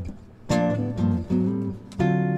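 A 1967 Gibson ES-125C archtop guitar playing jazz chords: one chord strummed about half a second in, a few short chord stabs after it, and another strum near the end.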